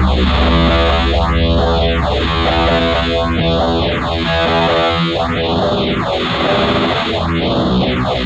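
Black/doom metal: distorted electric guitars over a heavy low drone, put through a sweeping effect that rises and falls about every two seconds.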